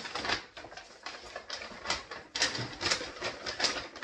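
Paper grocery bag rustling and crinkling as it is handled, in quick irregular crackles, loudest near the end.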